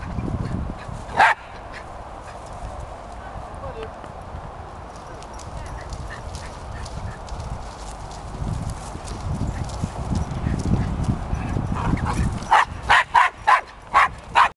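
A dog barking: one bark about a second in, then a quick run of about five barks near the end, over a low rumble and horses moving about on grass.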